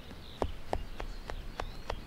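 Kitchen knife cutting down through layered baklava dough and clicking against the bottom of the round metal tray, starting about half a second in and going about three sharp clicks a second. Birds chirp faintly behind.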